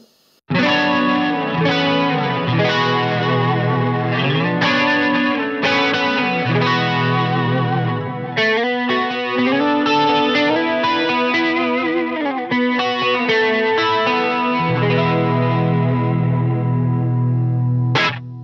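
Electric guitar played on a clean tone with compressor, chorus and a little delay, with held chords and melodic lines that include sliding notes. The playing starts about half a second in.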